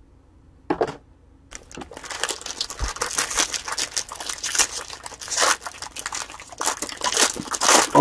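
Foil wrapper of a 2020 Bowman Draft Super Jumbo card pack being torn open and crinkled by hand: one short rustle about a second in, then steady crackling and crinkling from about a second and a half on.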